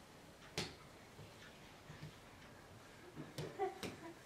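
A few sharp slaps on a tile floor from a toddler's hands and knees as he crawls: one a little after the start and two close together near the end.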